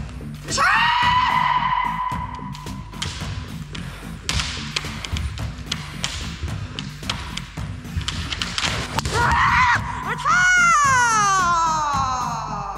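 Kendo kiai shouts: a long shout near the start and another, falling in pitch, near the end. Between them come sharp knocks from bamboo shinai strikes and foot stamps on the wooden dojo floor, all over background music.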